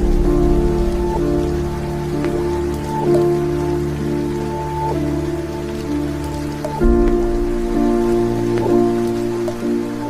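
Heavy rain pouring and running off a roof's edge, mixed under background music of slow, sustained chords that change about a second in and again near the seven-second mark.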